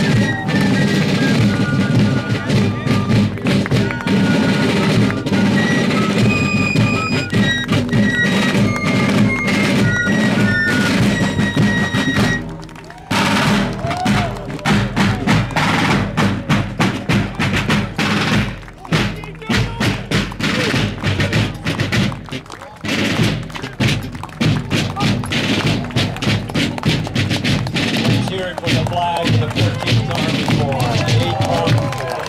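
A fife and drum corps playing a march: shrill fife melody over snare drum beats and rolls. After a sudden break about twelve seconds in, the fifes stop and the drumming carries on, with voices near the end.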